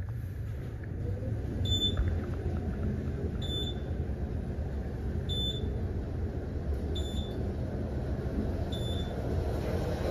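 Otis Series 7 elevator car travelling down, with a steady low rumble of the ride. A short, high beep sounds each time the car passes a floor: five beeps about two seconds apart.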